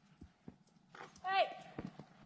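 A few soft hoof thuds of a horse walking on a snowy trail, with a single called "hey" a little after a second in.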